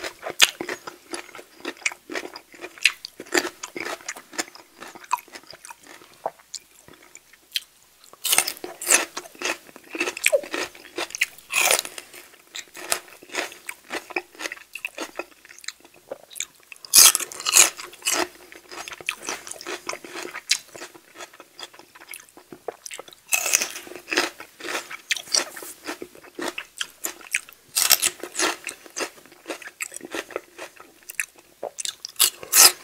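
Close-miked eating of sauced chicken wings and celery with dip: wet chewing, biting and crunching, with louder clusters of crunches every few seconds.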